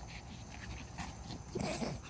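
Yorkshire terrier making a short pitched vocal sound, about half a second long, near the end.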